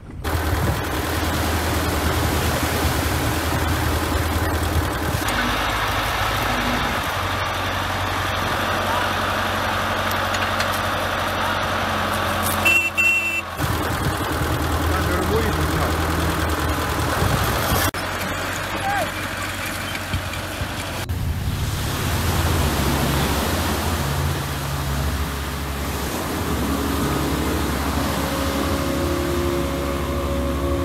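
An engine running steadily, mixed with people's voices; the sound changes abruptly several times.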